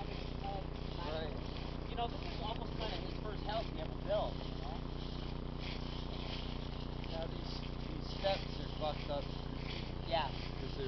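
Footsteps of several people walking through dry fallen leaves, with brief faint voices and a steady low hum underneath.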